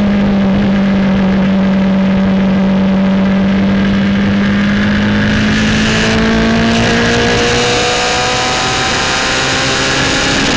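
Norma MC20F sports prototype's engine heard onboard, held at a nearly steady pitch in fourth gear through a long bend, then rising as the car accelerates out of it from about six seconds in.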